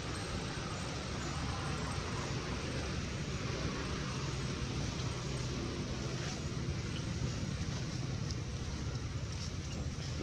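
Steady low rumbling outdoor background noise with no clear monkey calls.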